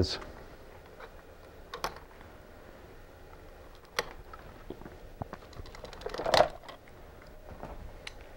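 Plastic zip ties being snipped with small cutters: three sharp snips a couple of seconds apart, the last the loudest, with light plastic clicks in between.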